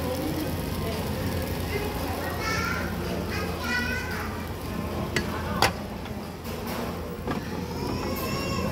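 Busy restaurant room din: children's voices and chatter over a steady low hum, with a sharp clack a little past the middle.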